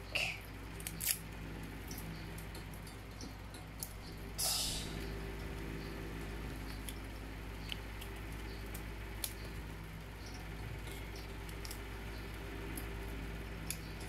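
Small rustles and clicks of sticker backing being peeled and handled, with one longer peeling rustle about four and a half seconds in, over a steady low hum.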